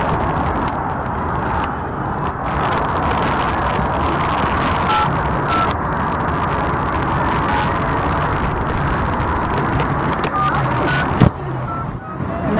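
Steady street traffic noise with a few short two-note touch-tone beeps from a smartphone keypad as a number is dialled, a pair about five seconds in and more near the end. A sharp knock sounds just before the end.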